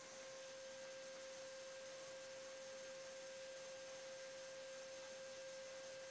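Faint, steady electronic tone at a single mid pitch, with a few fainter higher tones, held unchanged in an otherwise almost silent audio feed.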